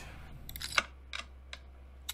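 Several short, sharp clicks over a faint low hum, the loudest a little under a second in: clicks of chips being placed as bets on the online blackjack table.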